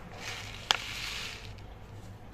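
Paper seed packet rustling as it is tipped and shaken over an open hand to pour out seeds, with one sharp crackle a little under a second in.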